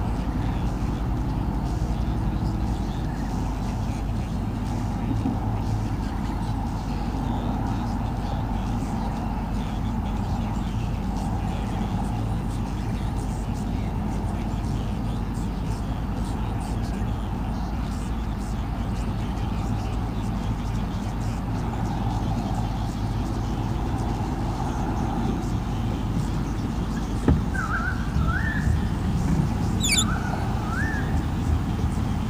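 Steady low rumble of motor traffic. Near the end comes a single sharp knock, then a few short rising chirps.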